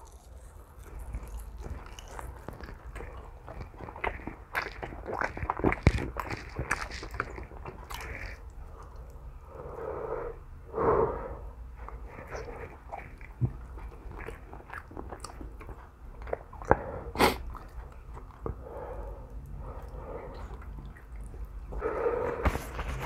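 A person chewing and biting a sauced chicken wing close to the microphone, with small wet clicks and crunches, a brief louder mouth or breath sound about eleven seconds in and a sharp click a few seconds later.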